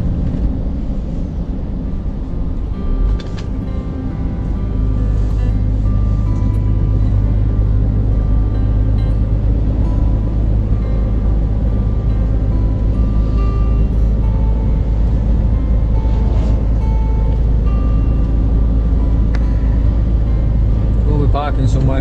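Steady low drone of a Scania truck's engine and tyres heard inside the cab, growing louder about four seconds in, with music playing over it.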